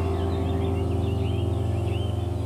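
Soft piano music holding a low chord that slowly fades, with songbirds chirping and twittering over it.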